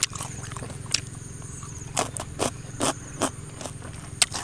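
A person chewing food close to the microphone, with several short wet mouth smacks spread through the few seconds.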